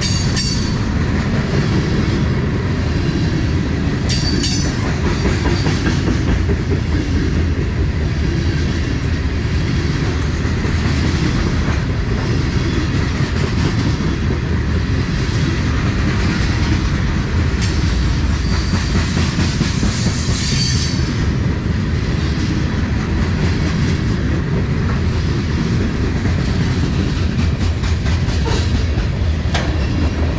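Loaded covered hopper cars of a long freight train rolling past: a steady, loud rumble and clatter of steel wheels on the rails, with a few brief high squeals.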